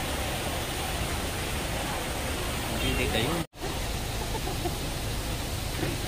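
Steady outdoor background noise with faint voices of a crowd, broken by a momentary dropout to silence about halfway through.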